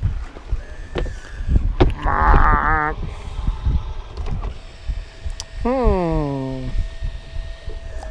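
Electronic R2-D2-like warbles from the bow-mounted electric trolling motor, over wind and water rumble. A wavering warble comes about two seconds in, a steady thin whine starts about halfway through, and a falling tone of about a second follows.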